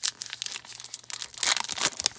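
A Topps Heritage trading-card pack wrapper crinkling and tearing as it is pulled open by hand, with irregular crackling that grows louder about one and a half seconds in.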